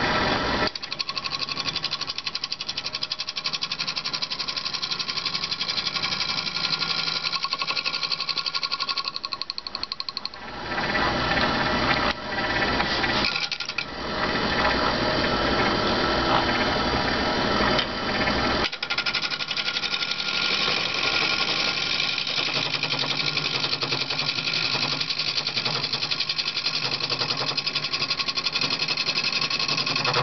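Wood lathe spinning a cherry bowl while a hand-held turning tool cuts across it, facing off a tinted epoxy repair: a fast, even rattling of the cut over the running lathe. The cut drops away briefly twice about a third of the way through as the tool comes off the wood.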